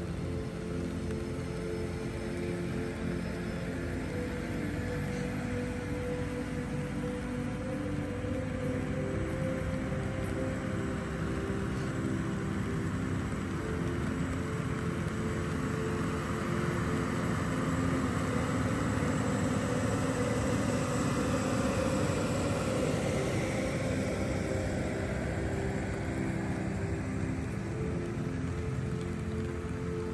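Many tractor engines running at once as a long procession passes, a steady drone of mixed engine tones over a low rumble that swells a little past the middle.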